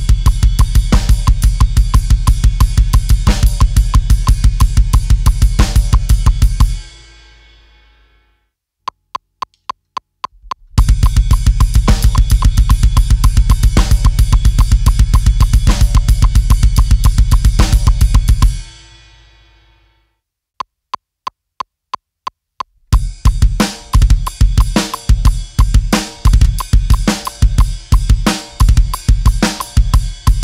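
Drum kit playing a heavy metal beat in 7/4 at 180 BPM, with bass drum and snare under a cymbal on every beat. It stops about seven seconds in and the cymbals ring out. A metronome clicks a count-in, and the same beat returns faster at 220 BPM; after a second ring-out and click count-in, a new seven-beat groove at 180 BPM with more spaced-out bass drum hits starts about 23 seconds in.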